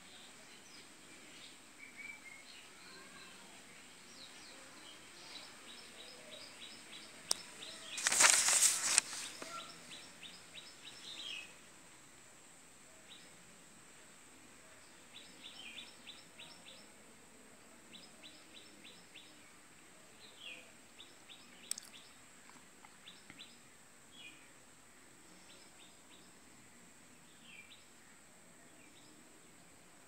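Small birds chirping in quick runs of short high notes, on and off throughout. A short loud burst of noise comes about eight seconds in.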